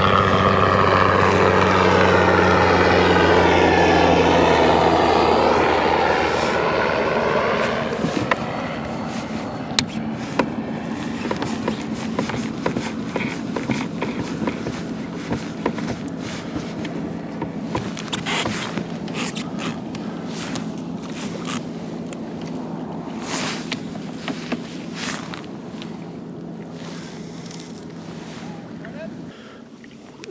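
A motorboat passing close by: a steady engine drone and the rush of its hull, loudest for the first several seconds and then fading away while the drone carries on faintly. Small splashes and ticks of water against the kayak come through once it has passed.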